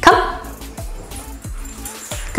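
A dog gives one short, loud yip or bark right at the start, over steady background music with a beat.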